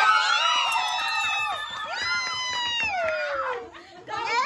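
Children shrieking excitedly in two long, high-pitched cries, the second sliding down in pitch near the end.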